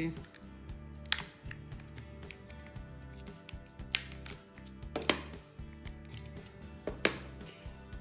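Quiet background music with about four sharp plastic clicks and knocks as batteries are pried out of a Sony TV remote's battery compartment and the remote is handled.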